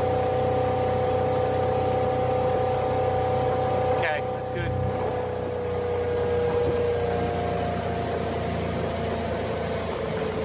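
A Sea Ray 270 Sundancer's engine running under way, a steady hum with water rushing in the wake. About four seconds in, the sound dips in level, and afterwards the hum settles slightly lower in pitch.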